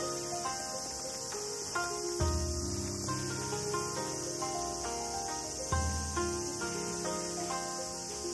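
A steady high insect chorus under gentle background music of short pitched notes with a recurring bass line.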